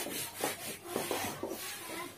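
A board eraser wiping a whiteboard: quick, repeated rubbing strokes, several a second, as the marker writing is cleared.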